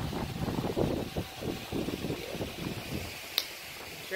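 Irregular low rumble and rustle on a phone microphone as the phone is moved about, easing off after about three seconds, with a single sharp click about three and a half seconds in.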